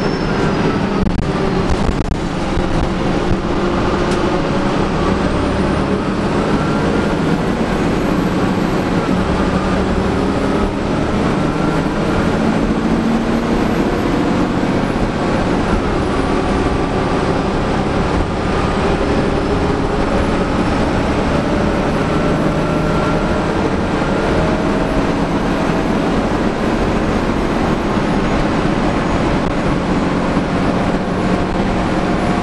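Inside the cabin of a 2011 Gillig Advantage low-floor transit bus on the move: steady engine, drivetrain and road noise, with faint whines that rise slowly in pitch and drop back several times.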